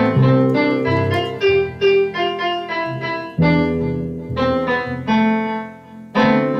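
Two electronic keyboards played together: a melody of struck piano-like notes over sustained chords that change every second or so, with no singing.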